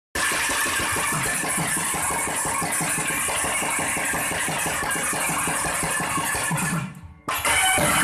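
Thavil, the South Indian barrel drum, played in a fast, dense run of strokes. It breaks off sharply just before seven seconds in, and after a brief gap a nadaswaram's held reed tones come in over drumming near the end.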